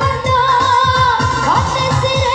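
Minang dendang singing for a KIM number game: a singer holds a wavering, ornamented melody over electronic backing music with a steady quick beat.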